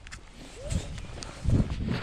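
Footsteps on a leaf-littered woodland dirt path, with a couple of heavier thuds near the end.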